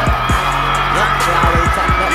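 Background music with deep, repeated bass hits.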